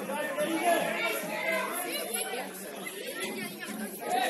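Several voices calling and talking over one another, from football players on the pitch and spectators at the rail, with no single voice standing out.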